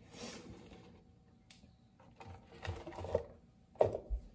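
Whole hot peppers being dropped by hand into a plastic blender jar: scattered soft knocks and thuds with some rustling, the loudest knock near the end.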